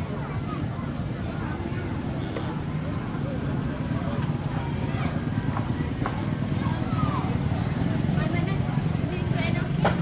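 Voices and shouts over a dense, rough rumble of splashing from the paddles of a many-oared pacu jalur racing canoe. The sound grows steadily louder as the canoe comes closer.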